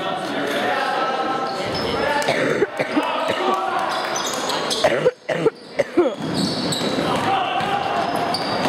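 Spectators' voices in a gym's echo during a basketball game, with a basketball bouncing on the hardwood floor. A few loud shouts ring out about five to six seconds in.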